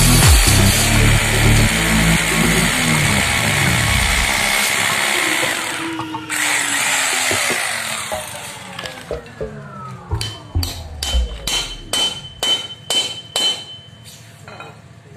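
Electric hand drill boring into a steel gate rail under background music, its whine winding down about eight seconds in. Then a run of sharp, ringing metal taps, about two or three a second, as a hammer strikes the steel rail.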